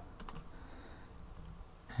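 A few faint computer keyboard keystrokes in quick succession, about a quarter of a second in.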